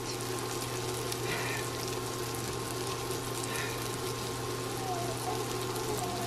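Sausage patties frying in a nonstick pan on an induction cooktop: a steady sizzle over a low, even hum.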